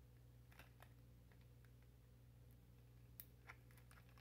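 Near silence with a few faint clicks and scrapes: the tip of a pair of scissors picking at tape on a clear plastic case.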